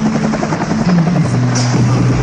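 Helicopter rotor chopping in a fast, even beat, mixed with music; a low held note comes in a little over a second in.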